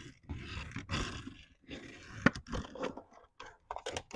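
Handling noise from a plastic toy car body gripped and turned in the hands: bursts of rubbing and scraping with a sharp click a little over two seconds in, then a few light clicks near the end.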